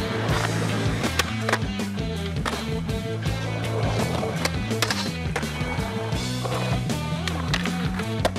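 Skateboard wheels rolling on concrete with several sharp clacks of the board popping and landing, mixed over a music track with a steady bass line.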